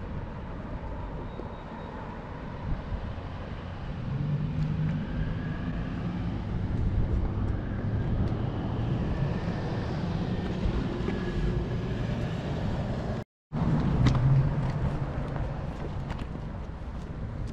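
Road traffic: car engines running, a low hum that grows louder about four seconds in. The sound drops out completely for a split second about thirteen seconds in.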